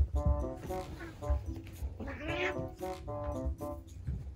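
A cat gives one short, rising yowl about two seconds in while two cats wrestle in a play-fight, over background music.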